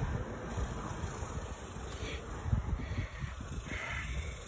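Low, uneven rumble of wind and handling noise on a phone microphone as it is moved about.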